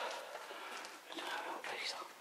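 A person whispering in short breathy bursts, with no clear words.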